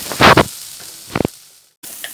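Tofu, onions and chillies sizzling in oil in a nonstick wok while a spatula stirs them, with two loud knocks of the spatula against the pan near the start and a lighter click after about a second. The sizzle fades and briefly cuts out near the end.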